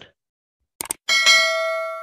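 A short click, then a single bell-like ding that rings on with a slow decay: a notification-bell sound effect.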